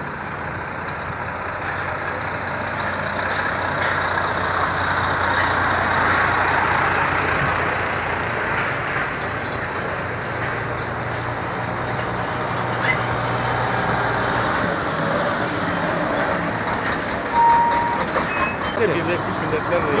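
Heavy lorries passing in a line, their engines and tyres making a steady rumble that swells over the first few seconds. A short high beep sounds near the end.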